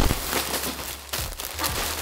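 Plastic mailer bags crinkling and rustling as they are shaken out, a continuous dense crackle of thin plastic.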